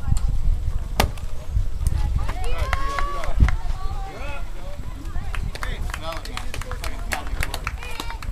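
A single sharp pop about a second in: a baseball pitch smacking into the catcher's leather mitt. Then voices call out briefly, and a few lighter clicks follow.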